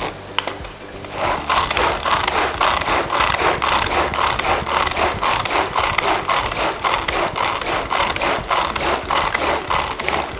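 Tupperware Extra Chef pull-cord chopper being pulled again and again, its three blades spinning through chopped mango and milk. It makes a fast ratcheting clatter that starts about a second in and keeps going steadily.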